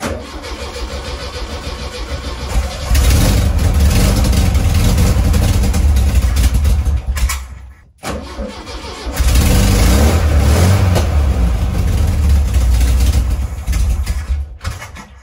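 1971 VW Beetle 1300's air-cooled flat-four being started after sitting for a couple of weeks: it turns over, catches about three seconds in and runs loudly, then cuts out near the middle and is started again at once and runs on. It does not hold its idle.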